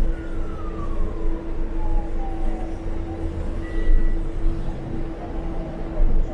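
Cabin sound of a Transmilenio articulated bus underway: a heavy low rumble with a steady hum, and a drivetrain whine that falls in pitch over the first three seconds. A short high beep sounds once near the middle.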